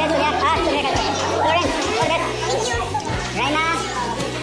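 Background music under overlapping young people's voices, chattering and laughing.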